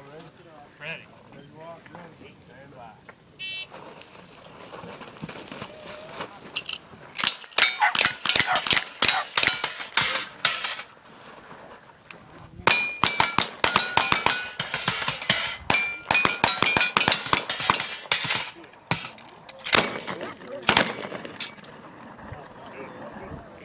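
Rapid gunfire in a cowboy action shooting shoot-off, with steel plate targets clanging and ringing as they are hit. The shots come in a long quick string about a third of the way in, then a brief pause and a second string, and two last shots near the end.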